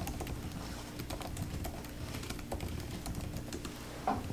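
Typing on a laptop keyboard: a quick, uneven run of key clicks.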